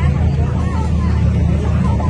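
Steady low-pitched rumble, with faint voices in the background.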